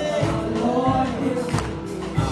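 Live gospel song: several singers' voices into microphones over keyboard accompaniment and a steady beat.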